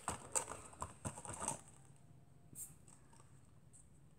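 Lidded plastic slime containers being handled on a tabletop: a run of light plastic clicks and knocks in the first second and a half, and one more faint knock about halfway through.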